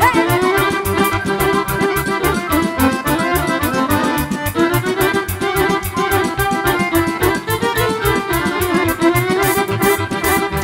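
Live band playing an instrumental passage led by a Guerrini chromatic button accordion, over a steady beat from the rhythm section.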